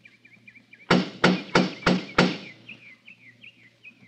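Five quick knocks on a wooden door, a radio-drama sound effect, about a third of a second apart. Birds chirp faintly before and after the knocking.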